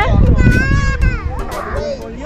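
Children's high-pitched voices calling out on a busy playground, over a low rumble.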